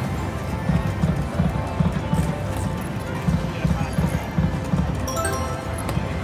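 Prowling Panther video slot machine playing its game sound: a low, drum-like beat of about three pulses a second under a busy musical wash.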